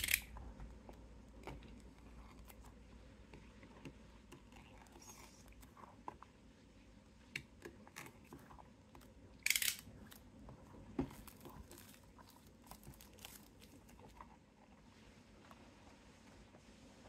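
Snap-off utility knife cutting open the seal of a small cardboard box, with faint scratching and handling of the box. A short, louder scrape comes about nine and a half seconds in.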